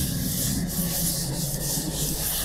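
A cloth duster wiping chalk off a green chalkboard in repeated back-and-forth strokes, a rubbing hiss that rises and falls about twice a second.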